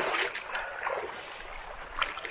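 Shallow stream trickling over stones, with a brief splash near the start as bare feet step through the water.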